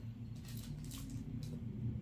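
Faint chewing and mouth sounds of someone eating soft bread, with a few small clicks, over a low steady hum.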